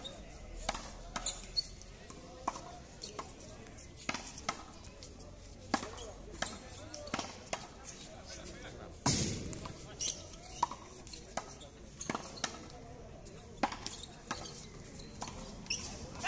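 A frontón ball struck by bare hands and rebounding off a concrete wall and floor in a rally: a string of sharp, irregular smacks, one or two a second, the loudest about nine seconds in.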